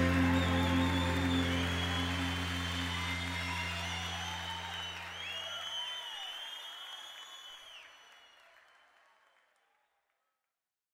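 The band's final held chord rings out beneath audience applause and cheering. The chord stops about six seconds in, and the applause fades away to silence near the end.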